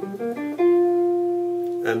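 Clean electric jazz guitar playing a few quick notes of an E-flat major 7 arpeggio with added ninth, ending on one long held note that slowly fades.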